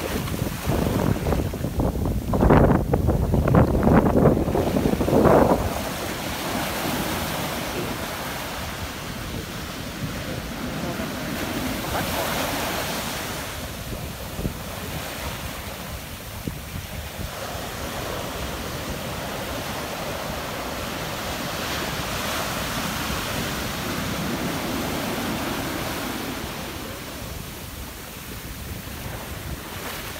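Ocean surf: small waves breaking and foamy water washing up the beach close to the microphone, with wind buffeting it. A close, rushing wash makes the first few seconds loudest; after that the surf rises and falls in slow surges.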